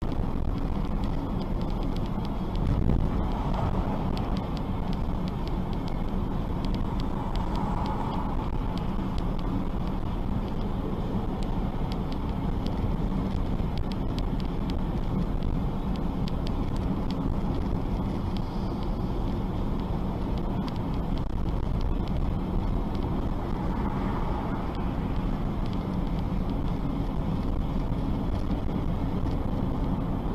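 Steady road and engine rumble of a moving car recorded from inside by a dashcam, with a brief louder bump about three seconds in.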